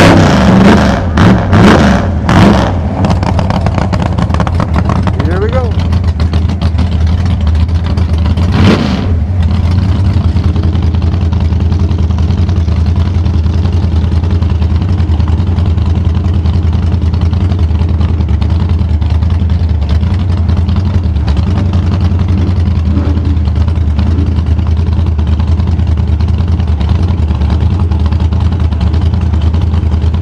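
A supercharged gasser drag car's engine, just fired up, is blipped several times in the first three seconds and once more about nine seconds in, then settles into a steady idle.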